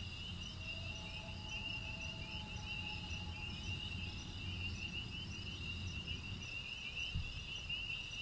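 Crickets chirping in a steady, fast-pulsing trill over a low hum that fades out near the end. A faint, soft two-note tone is held through the first half, and a small thump comes near the end.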